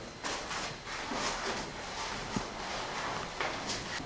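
Fabric rustling with soft scuffs and a few light knocks as a person slides down a wall and rolls onto a tiled floor in a controlled fall.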